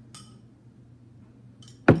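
A small glass set down on a hard tabletop with a sharp knock near the end, after a couple of light clinks.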